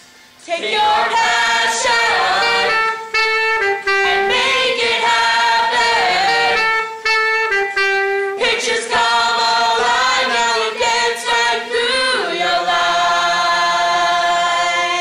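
A small choir of young male and female voices singing a cappella in close harmony. The singing breaks off for half a second at the start and picks up again. Near the end they move into a long held chord.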